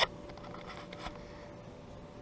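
Quiet outdoor background noise with a faint steady hum and a single soft click about a second in.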